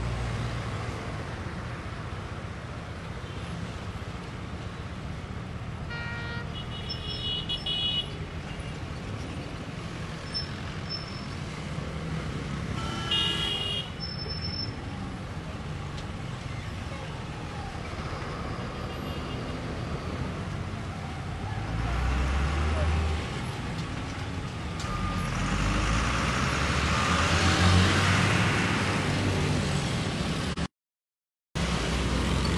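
Street traffic: vehicle engines and tyre noise with short horn toots about six seconds in and again about thirteen seconds in, and a vehicle passing louder in the last several seconds.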